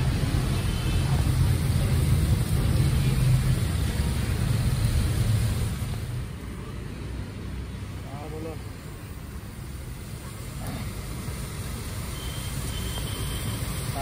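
Street background: a steady low rumble of road traffic with voices murmuring, dropping noticeably quieter about six seconds in.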